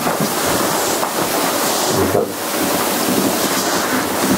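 Loud, steady rustling and rubbing noise on a handheld microphone as it is handled.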